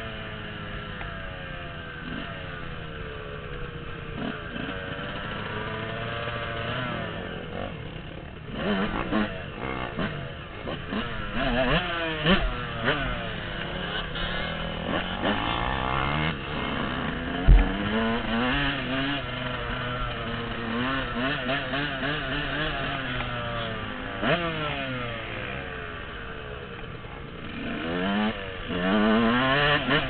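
Yamaha dirt bike engine under way, heard from the rider's seat, revving up and dropping back again and again as the throttle is worked through the gears. There is one sharp thud about halfway through.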